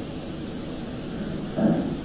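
Steady background hiss in a pause between a man's spoken sentences. A voice starts faintly about a second and a half in.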